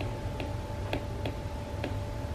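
Apple Pencil tip tapping on the iPad's glass screen while handwriting numbers: about five light, irregular ticks over a faint steady hum.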